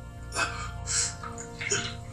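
Low sustained film-score drone, with three short breathy gasps from a man spaced across the two seconds.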